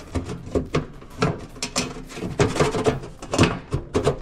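A fabricated battery tray being lowered and fitted down into an electric trike's frame: a run of irregular knocks, clunks and scrapes.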